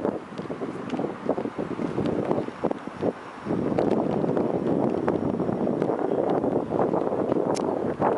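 Wind buffeting the microphone: a rough, uneven noise that eases off about a second in and comes back stronger about three and a half seconds in, with a few faint clicks.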